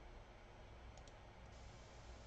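Near silence: room tone with two faint computer mouse clicks in quick succession about a second in.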